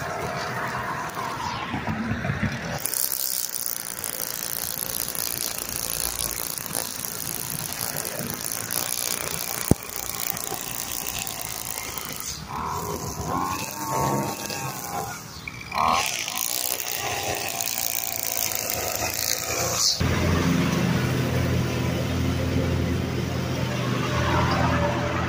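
Gas string trimmer running at high speed, its line cutting grass along a sidewalk edge, easing off briefly a little past the middle. Near the end it gives way to a zero-turn mower's engine running steadily.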